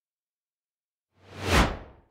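Whoosh transition sound effect after about a second of silence, swelling up and fading away within under a second, marking a cut between scenes.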